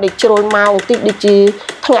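A woman speaking in a small room. Only speech is heard.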